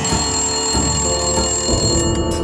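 A telephone ringing for about two seconds, laid over background music.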